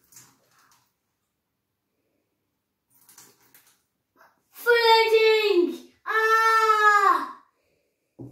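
A child's voice drawing out two long, high notes, about a second each with a short gap between, each dropping in pitch at the end.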